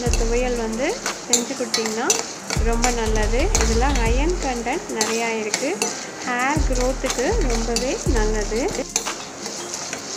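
Split lentils sizzling in hot oil in a steel pan while a spatula stirs and scrapes them around the pan. A melody with bass notes plays over it.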